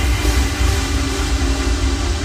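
Electronic dance music from a DJ set: a dense wash of noise over a steady low bass, with no distinct drum hits.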